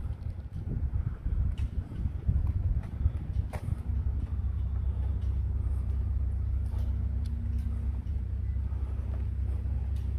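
A steady low engine rumble with a faint steady hum above it, setting in about four seconds in after a few seconds of uneven low rumbling.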